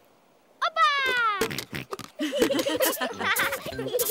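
Cartoon sound effects of spades digging sand: a quick run of short scratchy scraping strokes. It comes after a falling whistle-like tone, and music or giggling comes in about halfway.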